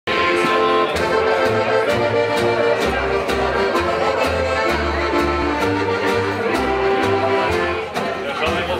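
Instrumental acoustic music: a held melody line over a moving bass line, with a steady strummed beat.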